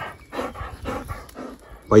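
A dog panting in short, quick breaths close to the microphone.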